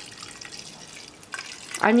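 Water trickling steadily from a plastic bottle into the narrow neck of a plastic spray bottle, faint, as the bottle is filled up.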